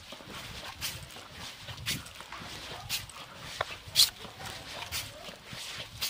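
Footsteps of someone walking, a regular scuff about once a second, with one sharper step about four seconds in.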